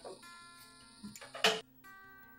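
Acoustic guitar background music with held, plucked notes, and one sharp click about a second and a half in.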